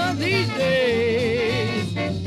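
A 1920s-style jazz band recording playing from a vinyl LP. About half a second in, a long held note wavers in wide vibrato over the band's steady beat.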